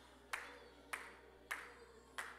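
Hand claps on a steady beat, about three every two seconds, each sharp with a short echoing tail.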